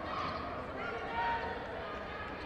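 Background crowd noise at a basketball game: a steady murmur of many voices, with no single loud event.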